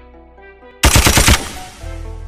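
Trap beat intro: a soft synth melody, cut by a rapid burst of machine-gun fire sound effect lasting about half a second, the loudest part. Deep 808 bass comes in near the end as the beat drops.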